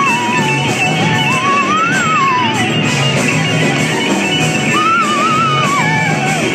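Live gospel band music, steady and loud, with a lead melody line that slides up and down in pitch over the accompaniment.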